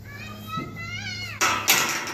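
A child's high-pitched voice, one drawn-out call rising in pitch for just over a second, followed by two sharp knocks close together.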